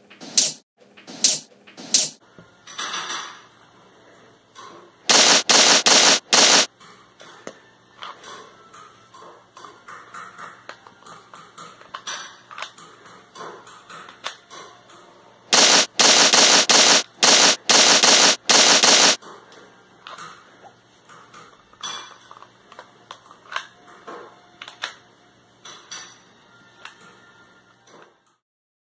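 A brick-built LEGO pistol being fired and worked by hand, its plastic parts snapping and clacking. A few sharp single snaps come in the first seconds, then two clusters of very loud bursts about five and sixteen seconds in, with lighter clicks between.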